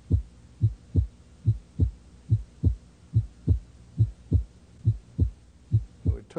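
Heartbeat: a steady lub-dub double beat repeating about seven times, roughly 70 beats a minute.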